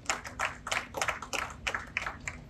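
Light, scattered hand-clapping from an audience: a few people clapping, about six or seven irregular claps a second, rather than full applause.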